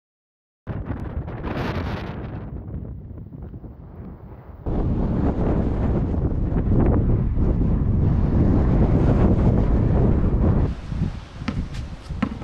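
After a brief silence, wind buffets the microphone with a loud, low rumble that grows stronger about halfway through. Near the end the wind drops and a few sharp knocks of a basketball bouncing on an asphalt court follow.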